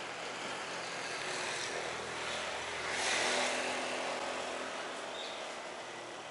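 A car engine idling with a low steady hum, and a rushing swell of noise that rises and peaks about three seconds in, then fades.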